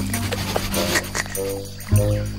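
Cartoon background music with short creature-like vocal noises from an animated dinosaur, coming in the second half.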